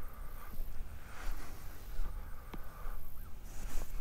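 Outdoor ambience: an uneven low rumble with faint animal calls and a few soft clicks.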